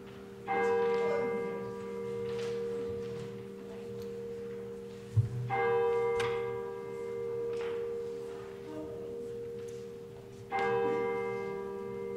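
A church bell tolled three times, about five seconds apart, each stroke ringing on and slowly fading into the next. A single dull thump comes just before the second stroke.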